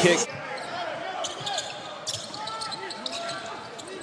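Basketball arena game sound: a ball bouncing on the hardwood court in a few sharp knocks, over a low crowd murmur. A louder burst of crowd noise cuts off abruptly just after the start.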